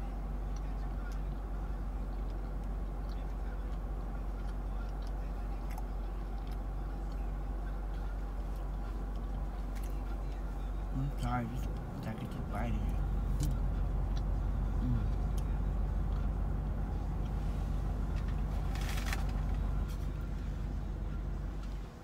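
Steady low hum inside a parked car's cabin, with a few brief soft knocks near the middle and a short rustle later on.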